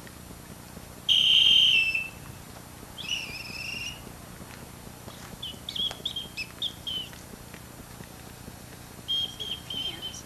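A bird calling in high whistled notes: a loud drawn-out note about a second in, a shorter second note, then a quick run of short chirps and a few more near the end.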